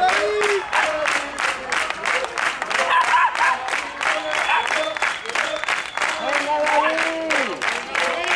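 Spectators clapping in steady rhythm, about four claps a second, with voices calling out over the claps.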